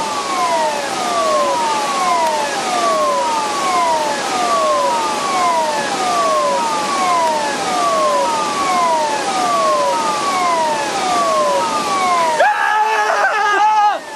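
River flood-warning siren sounding a repeated falling wail, roughly one sweep every three-quarters of a second: the signal of rising, dangerous water. About a second and a half before the end it gives way abruptly to a louder sound holding steady pitches.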